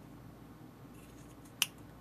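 A single sharp snip of scissors closing on a pompom's chunky yarn strands about one and a half seconds in, with a few faint clicks before it: the first trim of the long strands.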